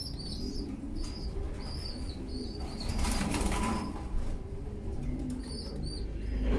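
Racing pigeons cooing in a loft, with a short flutter of wings about three seconds in as the pigeon hops up onto its perch block. Short high chirps repeat throughout.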